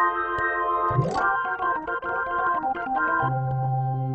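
Korg SV-1 stage piano's tonewheel organ sound ('Click Tonewheel' preset) playing sustained chords through its organ vibrato/chorus simulation set to C3. The chords change several times with short clicks at the changes, and a low bass note joins a little after three seconds in.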